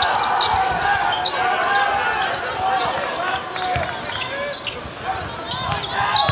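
Game sound from a basketball court: sneakers squeaking on the hardwood and the ball dribbling, over a murmur of arena crowd and players' voices.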